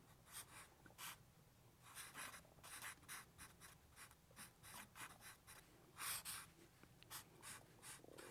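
Faint, short scratchy strokes of a black marker pen drawing on paper, a dozen or so irregular strokes with the loudest about six seconds in.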